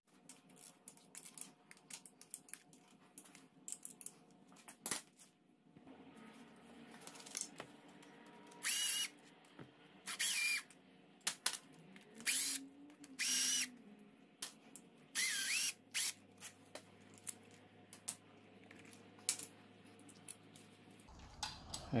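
Cordless power driver whirring in about five short bursts, each about half a second long, as it backs out the bolts of the balance-shaft chain guides and tensioner. Scattered light clicks of metal parts being handled run between the bursts.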